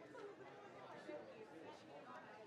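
Faint, indistinct chatter of a crowd of people talking at once in a large meeting room.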